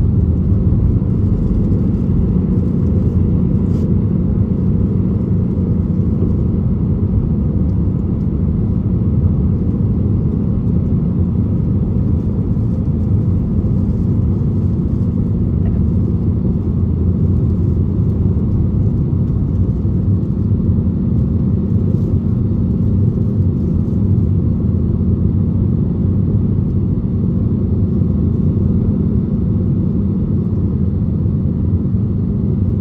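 Inside the cabin of an Airbus A320-family airliner at takeoff power: a loud, steady low rumble of jet engines and rushing air, running through the end of the takeoff roll and into the initial climb.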